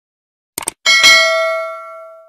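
Subscribe-button animation sound effect: two quick clicks, then a bright notification-bell ding that rings out and fades over about a second and a half.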